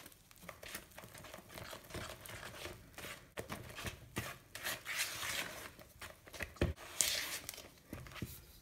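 Spatula scraping and folding thick creamed cake batter around a mixing bowl: a run of soft, irregular scrapes and squelches, with a sharper scrape about seven seconds in.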